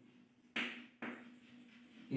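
Chalk scraping on a blackboard as a word is written: two short strokes, about half a second in and about a second in, then faint scratching.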